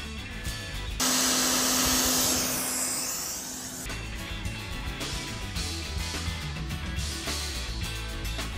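Hot air rework station blowing at high airflow over a GDDR6 memory chip to reflow its solder: a loud even rush of air with a low steady hum for about three seconds, fading before it stops. Background music with a steady beat plays around it.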